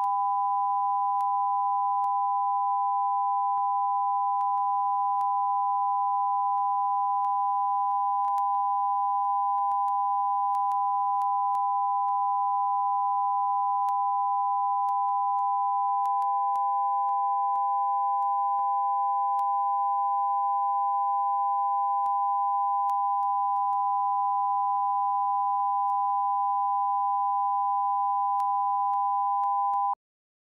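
Broadcast test tone accompanying television colour bars: a steady, unbroken tone of two pitches sounding together.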